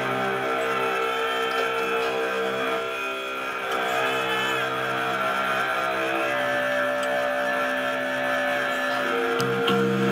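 Electric guitar playing long held chords that ring on, the notes changing about every three seconds, with no drums.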